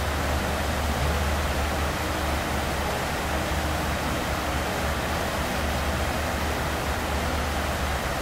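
Steady room noise: an even hiss with a low hum underneath, unchanging throughout, with no distinct events.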